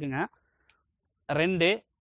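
A man speaking Tamil in short phrases, with a pause of about a second in the middle broken only by a couple of faint clicks.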